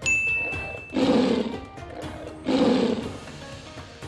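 A bright high ding held for about a second, then two tiger roar sound effects about a second and a half apart, over background music.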